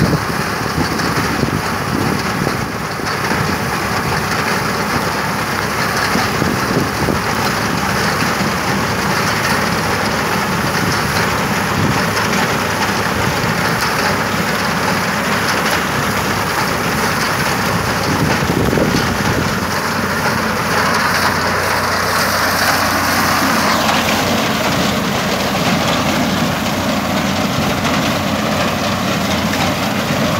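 Tractor engine running steadily under load while its rear-mounted straw-chopping implement cuts through dry standing straw, a loud continuous rushing noise over the engine's low hum.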